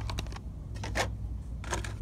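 Hot Wheels blister-pack cards clacking and rattling against each other as a hand flips through them on a peg hook, in a few quick clusters of sharp plastic clicks.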